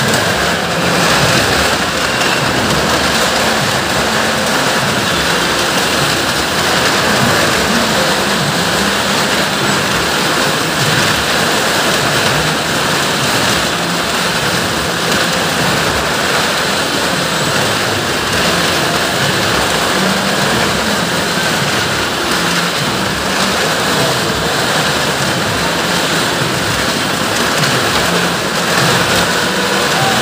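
Several cars circling on the vertical wooden wall of a well-of-death motordrome, their engines and tyres making a loud, steady rush of noise.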